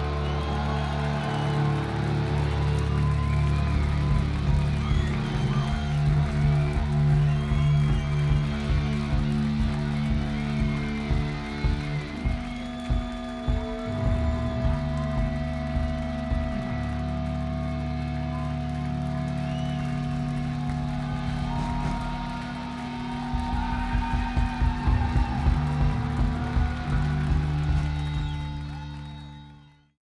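Live rock band playing electric guitars, bass guitar and drum kit: long held chords under a steady run of drum hits, with the drumming thickest near the end before the sound fades out.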